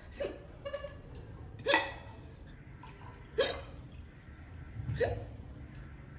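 A woman hiccuping four times at a steady pace, about one and a half seconds apart, each a short sharp catch in the throat. The hiccups come while she is eating very hot, chilli-laden instant ramen, a common trigger for them.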